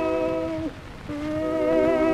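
Acoustic 78 rpm shellac recording from 1916 of a tenor with orchestral accompaniment. A note is held with vibrato, breaks off about two-thirds of a second in, and a new sustained note begins about half a second later. Record surface crackle runs underneath.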